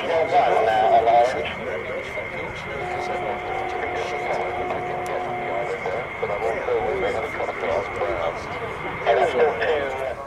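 Indistinct talking over a steady high-pitched whine, with a steady two-note hum for about three seconds in the middle.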